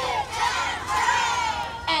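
A large group of children shouting a short chant together in unison, many voices overlapping for about a second and a half.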